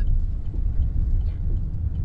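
Steady low rumble of a car on the move, heard from inside the cabin.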